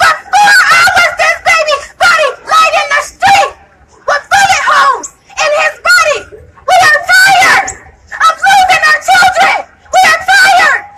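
A woman's voice shouted through a handheld megaphone, loud and harsh, in short phrases broken by brief pauses.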